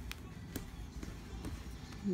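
A small child's bare feet walking on a hardwood floor: a few faint taps over a low background hum.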